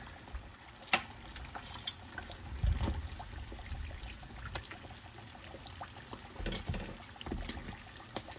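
Cassava and taro cakes deep-frying in a stainless steel pot of oil, a steady sizzle that is sparse now that the cakes are done and crisp. Metal tongs give a few sharp clicks and a dull knock against the pot as the cakes are lifted out.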